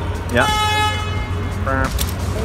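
A vehicle horn sounds once, a steady flat tone held for about a second, over the low rumble of city traffic.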